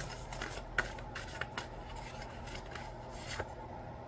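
A deck of tarot cards being shuffled and handled in the hands: soft sliding of cards against each other with a few light card flicks, the sharpest about a second in and near the end.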